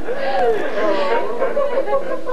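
Several people talking at once: overlapping chatter of voices in a small room.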